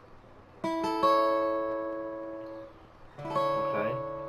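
Acoustic guitar chord strummed and left to ring, fading over about two seconds, then strummed again near the end. It is an A chord fingered in the D shape of the CAGED system.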